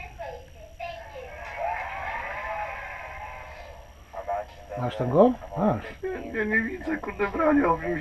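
Men's voices talking in a small room: indistinct and faint for the first half, then louder, wavering speech from about five seconds in, over a low steady hum.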